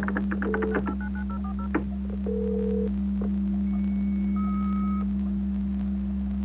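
A computer modem dialling a phone number by touch-tone: a quick run of dialling beeps over the first two seconds, then one short ring tone. Next comes the modem connecting, a steady high carrier tone joined by a lower one, both stopping together about five seconds in, as the link to the remote computer is made.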